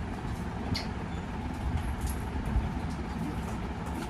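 A steady low background rumble, with a few light clicks and clinks of steel plates and bowls as people eat with their hands.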